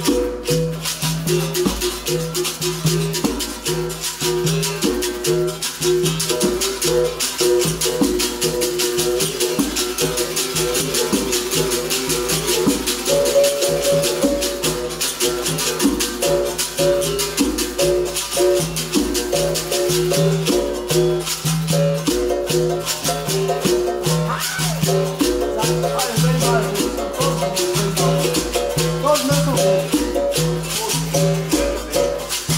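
Capoeira music: berimbaus twanging a repeating pattern over the steady rattling of caxixi basket shakers, in a driving, unbroken rhythm.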